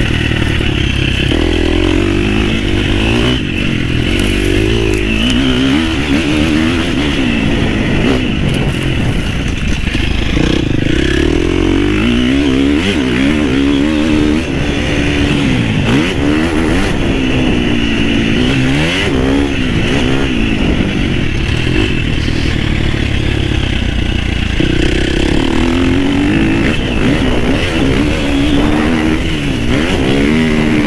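Husqvarna FC350's four-stroke single-cylinder engine, ridden under load, its pitch rising and falling every second or two as the throttle is opened and eased off, with occasional knocks from the bike.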